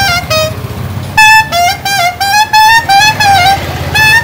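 Bamboo flute (bansuri) played in a melody of short notes with vibrato, with breathy pauses between phrases, over a low steady rumble.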